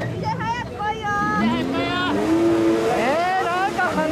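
A jet ski (personal watercraft) engine revving, rising in pitch about a second and a half in and holding high, with people's voices over it.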